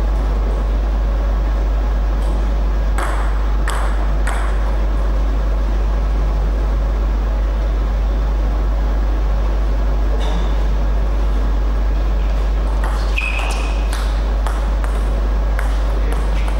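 Table tennis ball clicking sharply off bats, table or floor: three hits about half a second apart a few seconds in, then a scatter of clicks with a short ringing ping near the end. Under it, a steady low electrical hum.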